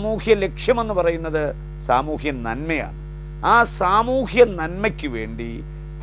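A man speaking Malayalam in bursts over a steady low hum that carries on unchanged through his pauses.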